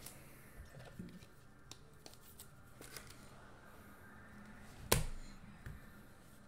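Trading cards being handled and laid down on a table: faint rustling and small clicks, with one sharp tap about five seconds in.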